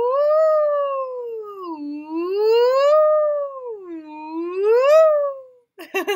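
A woman's voice singing one continuous "ooh" that slides smoothly up and down in pitch, three rises and falls, tracing a looping line drawn on a card as a vocal-exploration exercise. The glide stops shortly before the end, followed by a brief spoken word.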